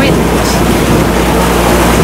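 Wind buffeting the microphone over the rush of a choppy sea against a sailboat's hull, with a low steady hum underneath.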